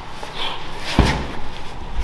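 A single heavy thud about a second in, from a 70-pound Kevlar medicine ball knocking against the lifter's body as he brings it down between clean and presses.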